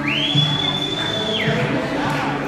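A single shrill whistle that slides up, holds one high pitch for over a second and drops away about a second and a half in, over a crowd singing and chanting.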